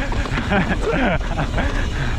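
Wind rushing over the camera microphone and tyre rumble from a Yeti SB150 mountain bike rolling fast down a dry dirt trail.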